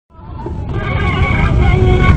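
Gasba (end-blown reed flute) music fading in from silence, with held pitched tones over a heavy low rumble.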